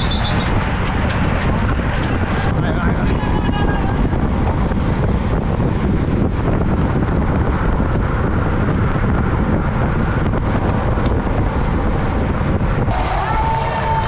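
Steady rumble of wind and road noise on a bike-mounted camera riding in a racing peloton, with faint voices and a pitched whistle-like glide over it. The sound changes abruptly twice, at cuts between cameras.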